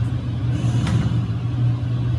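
A steady low hum, with one short faint click a little under a second in.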